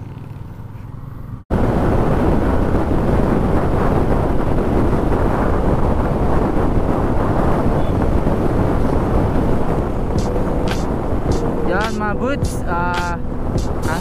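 Motorcycle riding along a road, heard as loud wind rush and engine and road noise on a helmet-mounted microphone. It cuts in suddenly about a second and a half in, after a short, quieter stretch of low engine hum. A voice comes in over the noise near the end.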